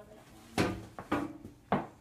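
A few short wooden knocks and clunks, about half a second apart: a wooden school desk and chair being bumped as a child gets up from the chair.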